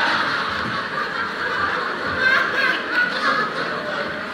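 A live audience laughing together, the laughter slowly easing off.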